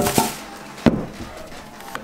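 Unpacking noise as a car amplifier is lifted out of its box and its foam end inserts are pulled off. There are a few sharp knocks and some rustling: two near the start, and the loudest about a second in.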